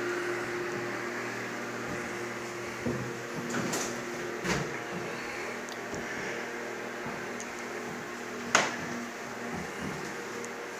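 Steady mechanical hum of a room appliance or air-handling unit, with a few soft knocks and one sharper knock near the end.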